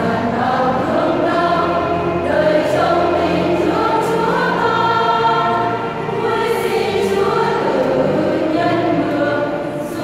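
Women's church choir singing together in sustained, held phrases, with a brief dip for a breath about six seconds in.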